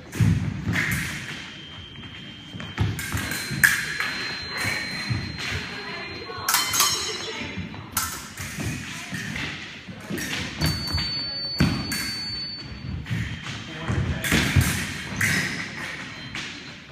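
Fencing footwork on a wooden floor, shoes thudding and stamping at irregular intervals, with épée blades clinking and scraping against each other; one clash about six and a half seconds in rings. A thin high steady tone sounds for a few seconds at a time, several times.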